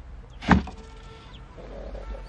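A wooden crate knocking as it is handled and set down, with one sharp, loud knock about half a second in.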